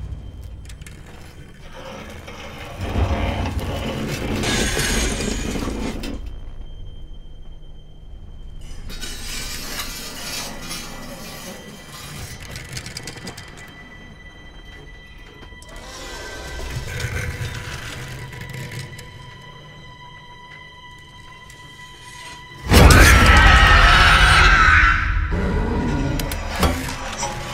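Horror-film soundtrack: a quiet, tense score with swells of low rumble and rising noise. Near the end comes a sudden loud crash lasting about two seconds.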